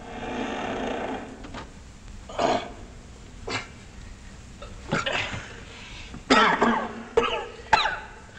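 A man coughing and grunting with strain in a string of short bursts: a drawn-out groan in the first second or so, then short coughs and grunts, the loudest about six and a half seconds in and again near the end.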